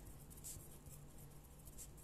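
Faint scratching of a pen writing by hand on paper, with a slightly louder stroke about a quarter of the way in and another near the end.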